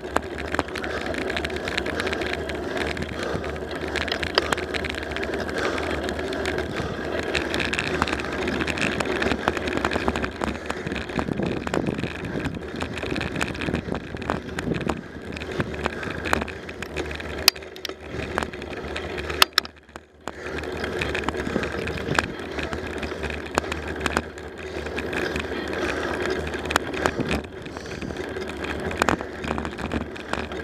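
Bicycle rolling along an asphalt road: steady tyre and wind noise with frequent small rattles and clicks. There is one sharper click about two-thirds through, followed by a brief lull.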